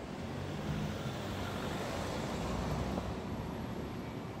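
Street traffic: a motor vehicle passing on the road, its engine and tyre noise swelling gently and easing off near the end.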